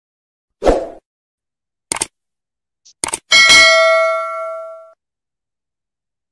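Subscribe-button animation sound effects: a soft thump, a mouse-style click about two seconds in, a quick double click a second later, then a bell ding that rings out and fades over about a second and a half.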